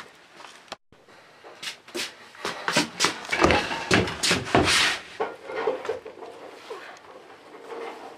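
A quick run of irregular knocks, bumps and rustles in a small room, loudest in the middle, then fading to quieter rustling.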